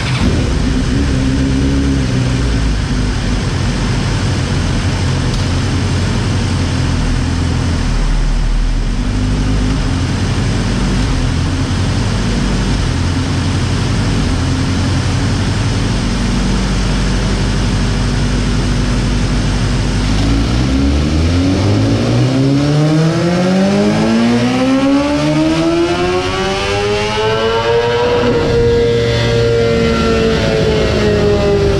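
2020 BMW S1000RR inline-four engine, breathing through a Jeskap K67 long slip-on exhaust, running on a dynamometer. For about the first twenty seconds it runs at lower revs. Then it makes a full-throttle dyno pull, rising steadily in pitch to near redline about eight seconds later, and eases off near the end.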